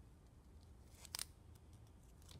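Near silence, broken about a second in by one short crinkle of folded paper and clear tape being pressed down by fingers.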